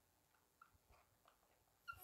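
Near silence, broken by a few faint, short squeaks of a felt-tip marker writing on paper.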